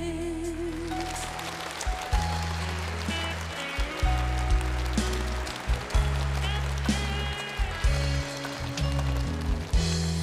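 Live band playing an instrumental break in a pop ballad: keyboard melody over sustained bass notes and a steady beat. A female singer's held, wavering note ends about half a second in.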